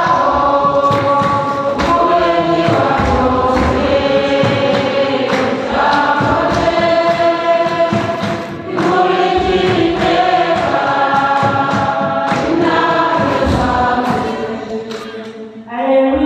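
A choir singing a gospel hymn, loud, in sung phrases that break every second or two.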